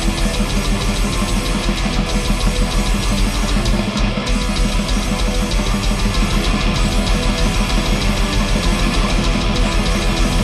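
Black metal band playing live: distorted electric guitars over fast, steady drumming on a Pearl drum kit, dense and continuous. The bass drum drops out briefly about four seconds in.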